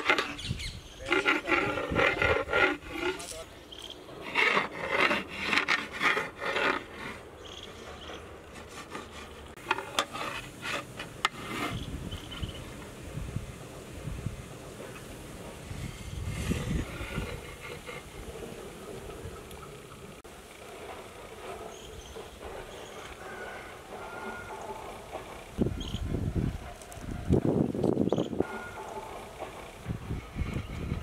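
Voices in the background during the first few seconds, then a metal ladle scraping and knocking inside a large metal biryani pot as the rice and mutton are layered and turned.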